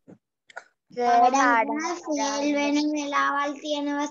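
A child's voice in a drawn-out, sing-song call, starting about a second in and holding long, level notes, with faint clicks just before it.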